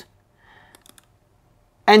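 A few quick computer mouse clicks just under a second in, a double-click opening a folder in a file manager, over a faint background hiss.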